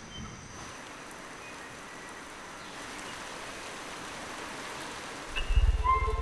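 Steady rain falling on rainforest foliage, an even hiss. Near the end a deep, low rumble sets in.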